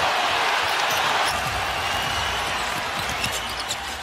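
Arena crowd noise, a dense steady roar that slowly dies down, with a basketball being dribbled on the hardwood court underneath.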